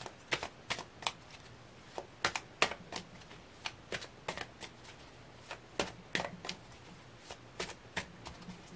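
A tarot deck being shuffled by hand: a string of sharp, irregular card snaps and slaps, two or three a second, with brief pauses.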